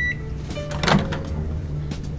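Countertop microwave oven: the last of its long end-of-cycle beep cuts off, then about a second in the door-release button is pressed and the door pops open with a single clunk.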